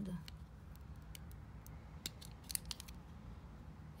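Hard-cased Charlotte Tilbury eyeshadow palette compacts clicking and knocking against each other as they are sorted through in a drawer: about a dozen light, sharp clicks, scattered irregularly over the first three seconds.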